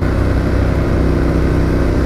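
Yamaha Ténéré motorcycle engine running at a steady cruising speed on a gravel track, its note holding an even pitch, over a steady rush of wind and tyre noise, heard from the rider's helmet.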